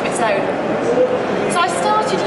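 A woman talking, mid-presentation, over the steady background noise of a large, busy hall.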